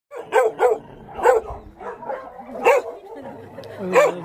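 A dog barking repeatedly: about five loud barks at uneven intervals, with softer barks between them.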